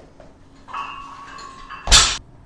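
A loaded EZ curl bar set down on the floor with one sharp, heavy clank near the end.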